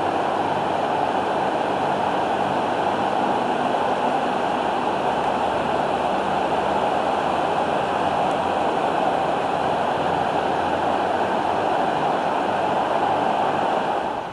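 The Middle Fork of the Popo Agie River rushing: a steady, loud wash of flowing water.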